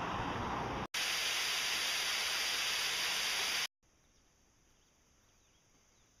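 A steady, even hiss with no pitch to it. It drops out for an instant about a second in, comes back louder, then cuts off suddenly near four seconds, leaving only a faint hiss.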